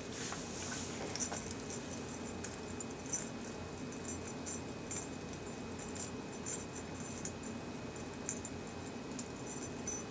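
Light metallic clinks of a small chain and a winch cable hook being handled as the hook is fastened onto the chain. The clicks come irregularly throughout, over a steady low room hum.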